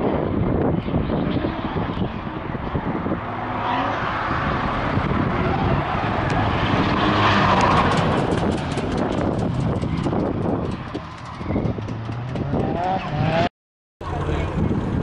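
Drift cars on track: engines revving, pitch rising and falling as the cars slide through a corner, over a haze of skidding tyres. The sound cuts off suddenly near the end.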